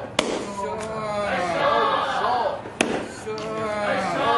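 Wooden mallet pounding steamed glutinous rice (mochi) in a granite stone mortar: two heavy thuds about two and a half seconds apart. Between the strokes the pounders call out in loud, drawn-out shouts.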